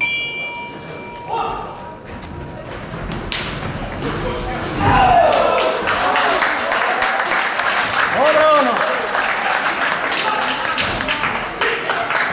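A ring bell struck once, ringing for about a second, to open the first round. From about four seconds in, spectators shout loudly and keep on shouting, over a run of sharp thuds from the boxers' punches and footwork on the canvas.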